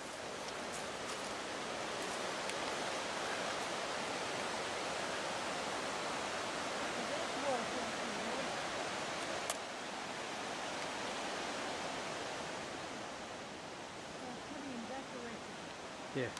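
Steady rushing of a waterfall, an even hiss of falling water, with one sharp click about halfway.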